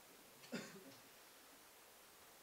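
A man's single short cough about half a second in, in an otherwise near-silent room.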